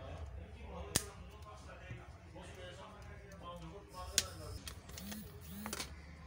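Sharp plastic clicks, the loudest about a second in and again about four seconds in, as the snap-fit clips of a Xiaomi Redmi 6A's plastic back cover pop loose while it is pried off by hand.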